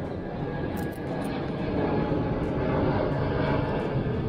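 A distant engine rumble, steady and without clear pitch, swelling slightly about a second in, with a few faint clicks.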